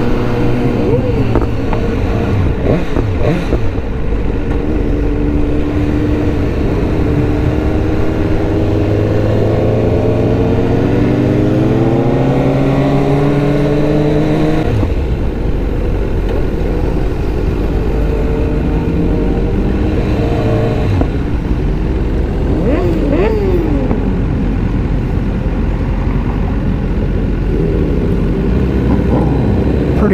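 Motorcycle engines from a group of sportbikes riding by. One engine climbs steadily in pitch for several seconds as it accelerates, then drops suddenly about halfway through, as at a gear change. Shorter rises and falls in engine note come near the start and again about three quarters of the way in.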